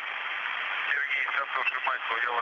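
Hiss of the space-to-ground radio link, with a faint, garbled voice heard through the noise.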